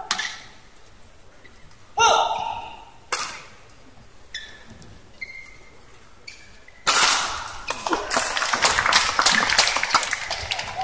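Badminton rackets striking the shuttlecock in a rally: a few sharp, isolated cracks a second or more apart. From about seven seconds in, as the point ends, the crowd applauds.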